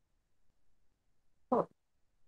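A quiet room, then about one and a half seconds in a single short, buzzy vocal sound from a person, like a brief grunt or syllable.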